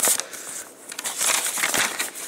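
A folded paper rules insert rustling and crinkling as it is unfolded by hand.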